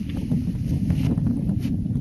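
Wind buffeting the microphone: a steady low rumble with a few faint ticks over it.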